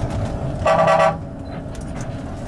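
A vehicle horn sounds once, a flat steady tone lasting about half a second, a little after half a second in. Underneath it the bus engine runs with a steady low rumble, heard from inside the cabin.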